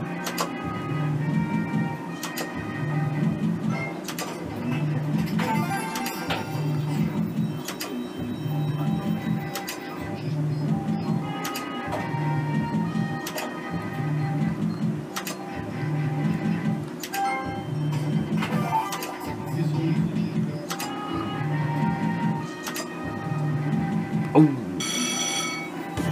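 Merkur "Up to 7" slot machine playing its looping background music with a steady repeating beat, with short clicks as the reels spin and stop game after game. Near the end, a brief bright chime sounds as three stars line up for a win.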